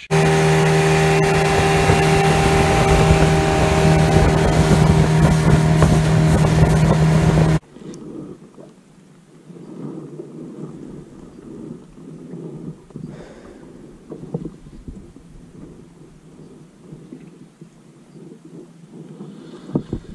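An engine running at a steady speed under heavy wind rush for about seven and a half seconds, then cut off abruptly. It gives way to a much quieter mix of water and wind sounds with faint occasional clicks.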